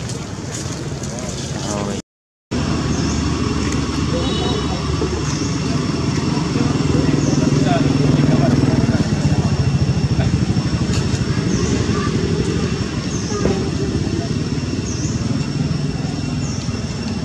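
Steady rumble of a motor vehicle engine that swells in the middle, with a short high chirp repeating about every second and a half. The sound cuts out for half a second about two seconds in.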